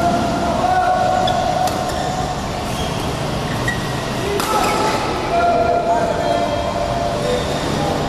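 Busy indoor badminton hall: a steady murmur of voices and hall noise, with a few sharp clicks, one about two seconds in and one around the middle.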